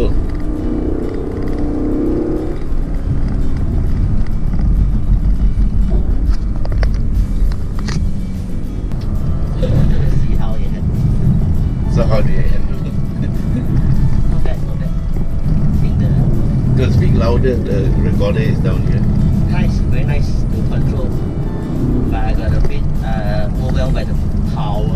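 Lexus LC 500's naturally aspirated 5.0-litre V8 and tyre noise heard from inside the cabin while driving, a steady low sound, with music and some voices over it.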